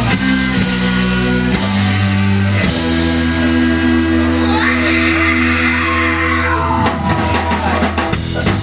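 A live band playing: held chords over sustained bass notes, with guitar and drums. About seven seconds in, a quicker rhythm of sharp drum hits comes in.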